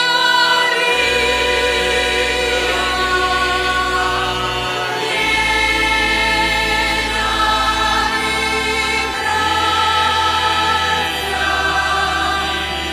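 Choir singing a liturgical hymn over sustained low accompanying notes that change every few seconds.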